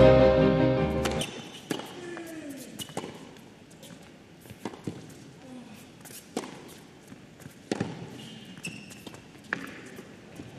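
Title music fading out about a second in, then a tennis rally on an indoor hard court: sharp racket strikes on the ball and bounces, six in all, about one every second and a half.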